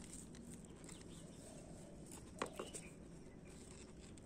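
Mostly quiet background with a couple of faint, brief clicks a little past halfway.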